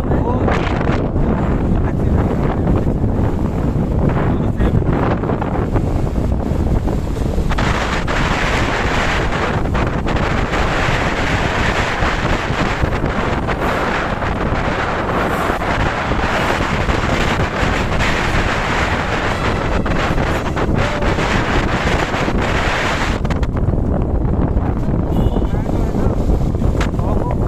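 Wind rushing over the microphone of a moving motorbike or scooter, a steady noise with road and traffic sound underneath. It turns harsher about a third of the way in and eases again near the end.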